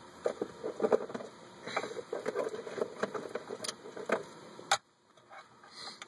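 Rummaging through and handling small objects, probably tobacco tins and pouches: irregular rustling with scattered clicks and knocks, ending in a single sharp click.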